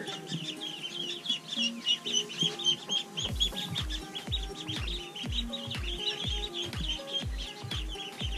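Khaki Campbell ducklings peeping continuously, many short high calls overlapping. Background music plays under them, and a steady bass beat of about two a second comes in about three seconds in.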